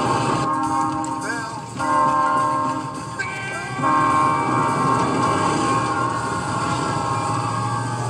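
Train horn blaring from a movie soundtrack in long blasts, a chord of several tones with short breaks about two and four seconds in, as a locomotive bears down.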